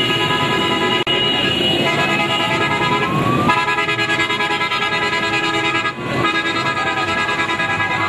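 Vehicle horns blaring long held notes, with a rising glide in pitch, over the engines of motorcycles and vans moving slowly in a crowded street procession.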